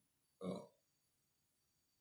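One brief, low vocal sound from a person about half a second in; otherwise near silence.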